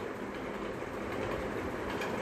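Steady background noise: an even rush with no distinct pitch or events.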